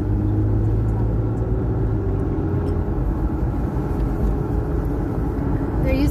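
Road and engine rumble heard inside the cabin of a moving car: a steady low rumble with a low hum that fades about halfway through and a faint tone slowly rising in pitch.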